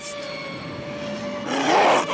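A steady held tone from the cartoon soundtrack, then near the end a loud, rough growl from the attacking pack of dholes.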